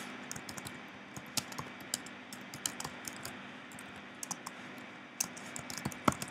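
Typing on a computer keyboard: an irregular run of faint keystroke clicks, with a few sharper taps among them.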